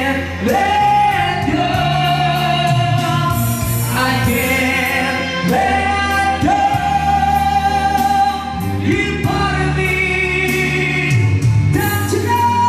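A male singer singing a rock ballad over a backing track in a hoarse, strained voice, sliding up into three long held high notes.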